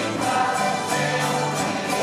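Tuna ensemble playing: cavaquinhos and acoustic guitars strummed in a steady rhythm under a group of voices singing together.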